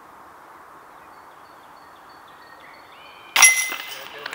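Disc golf putt striking the chains of a metal chain basket about three seconds in: a sudden jangling crash with high ringing that fades, the disc caught in the chains and dropping in for a made putt.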